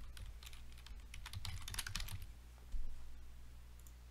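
Typing on a computer keyboard: a quick run of keystrokes over the first two seconds or so, then a single louder click a little before three seconds in, over a steady low hum.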